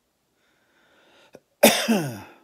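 A man coughs once, loudly and suddenly, about one and a half seconds in, after a short faint breath in and a small click. He says he is coming down with a cold.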